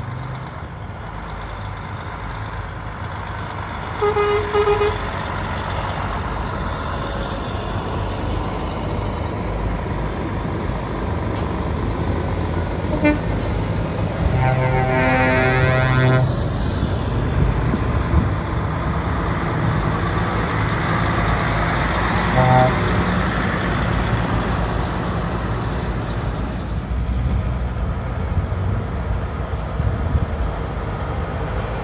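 Diesel engines of heavy truck tractor units rumbling as they pull slowly past in a line, with air horns sounded several times: a short blast about four seconds in, a brief toot near the middle followed by a longer multi-note blast, and another short blast later.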